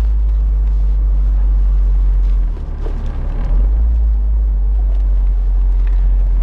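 Mazda MX-5 roadster on the move, heard from inside the cabin: a steady low rumble of engine and road noise that dips briefly about two and a half seconds in.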